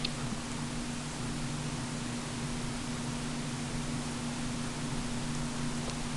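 Steady, even hiss with a faint low hum: an HP Pavilion dv6 laptop's cooling fan running while the machine boots.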